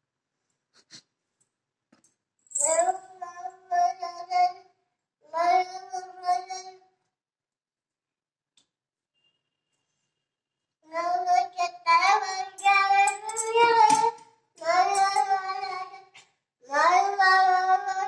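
A small child's voice singing in short, drawn-out phrases on held notes, pausing for a few seconds in the middle, then singing again, louder, until the end.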